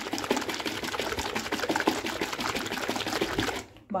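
Thick curd knocking and sloshing inside a tightly lidded plastic container shaken hard by hand, a fast steady rattle that stops shortly before the end. The shaking churns the curd into buttermilk.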